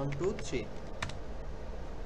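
Computer keyboard keystrokes: a few clicks, with one sharp key click about a second in.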